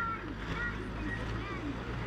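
Faint outdoor street ambience: a few distant voices over a steady low hum.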